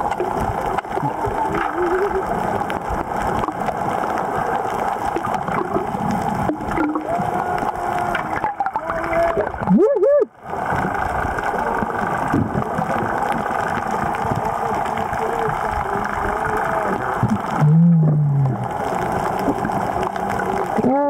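Sound recorded underwater: a steady hum with gurgling water, and a snorkeler's muffled exclamations through the snorkel about halfway through and near the end.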